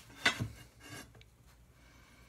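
Hands handling aluminium extrusion rails and hardware: a sharp knock about a quarter second in, then a couple of brief rubbing scrapes within the first second.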